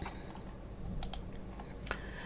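A few faint clicks at a computer, two close together about a second in and one near the end, over quiet room tone.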